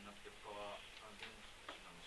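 A faint, distant voice speaking quietly, likely a student's question off-microphone, with a few light clicks.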